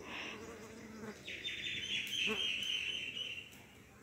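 A bird's high, trilling call lasting about two seconds, starting about a second in, with a short high chirp right at the start.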